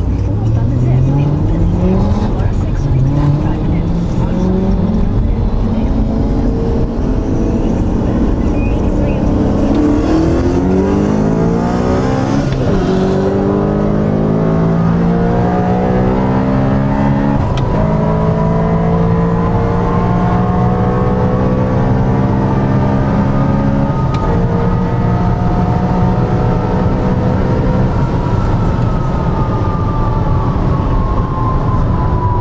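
Supercharged BMW M3 E92 V8 heard from inside the cabin, accelerating hard through the gears: the engine's pitch climbs and drops back at each of several upshifts. A thin whine rises above it in the second half and falls away near the end.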